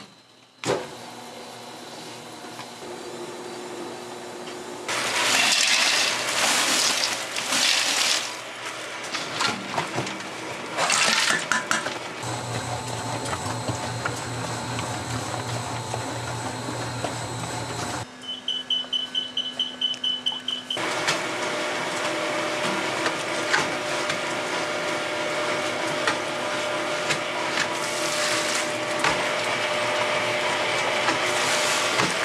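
Large commercial dough mixer running, its motor humming steadily while the hook churns flour and dough in the steel bowl. The sound changes abruptly several times, with louder stretches of rushing noise.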